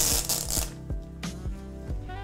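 Protective plastic film being peeled off a new iPad: a crackling, rasping pull in the first half-second or so, then fainter rustles, over background music.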